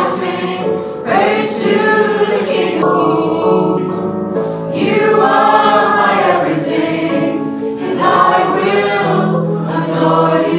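Congregational worship song sung by a small group of voices over keyboard accompaniment, in phrases of a few seconds with long held notes.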